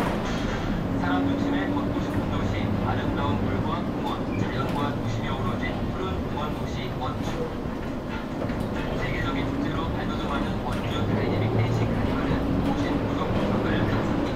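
City bus running, heard from inside the cabin: steady engine and road noise with small rattles, and a low engine drone that swells twice as the bus drives on.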